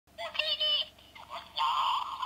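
Jawa chatter: a squeaky, high-pitched gibberish voice in short quick bursts.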